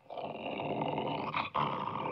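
A dog growling in two long, rough growls with a brief break about a second and a half in.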